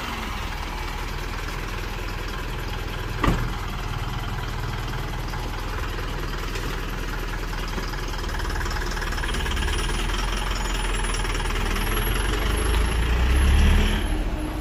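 A light box truck's diesel engine idling, with a single sharp knock about three seconds in like the cab door shutting; the engine then grows louder near the end as the truck pulls away and drives past.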